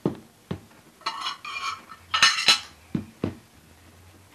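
A small hard object being handled: a few sharp knocks and light clinks, with two short bright jingling sounds in the middle.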